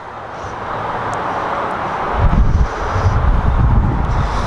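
Wind buffeting the microphone over a steady background hiss, turning into a heavy, uneven low rumble about halfway through.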